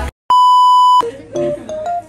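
The background music cuts off, and after a brief gap one loud, steady electronic beep sounds for under a second, the classic censor-bleep tone. Soft plucked-string music starts right after it.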